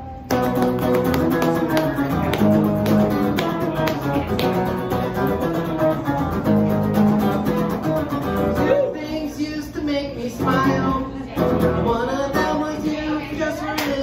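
Amplified hollow-body electric guitar strummed hard in a fast, driving rhythm: the instrumental intro of a punk song, starting abruptly just after the opening.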